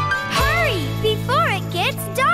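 Children's song: a young voice singing over bright backing music with a steady bass line.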